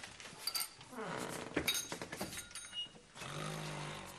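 Small metal objects clinking as they are grabbed and shoved into a cloth sack, with a low vocal sound sliding down in pitch about a second in and a short steady low hum near the end.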